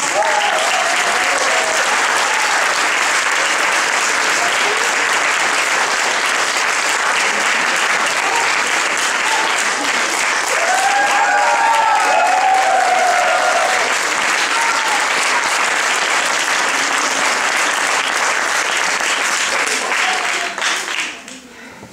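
Audience applauding steadily, with a few voices calling out over the clapping just after the start and again about ten seconds in.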